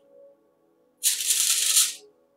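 A loud, grainy rattling hiss that starts abruptly about halfway through and lasts about a second before cutting off, over faint steady background music.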